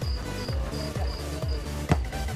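Electronic dance music with a steady bass beat, over which a short high chirp repeats evenly several times a second. A single sharp knock stands out near the end.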